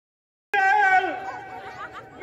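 An actor's loud, high-pitched held cry, starting abruptly about half a second in, the first long note sliding down in pitch before a quieter stretch of voice.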